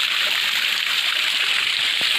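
Irrigation water pouring steadily from a channel in a stone terrace wall and splashing onto the stones below, a constant rushing splash.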